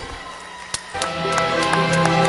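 Low room sound with a single tap, then, about a second in, theme music starts: held notes over a steady beat.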